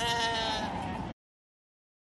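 A Harri sheep bleating once, a single wavering call lasting under a second; the sound then cuts off abruptly just over a second in.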